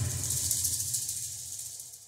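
Background music fading out after a run of drum hits. A high shimmering wash and a low sustained tone die away together near the end.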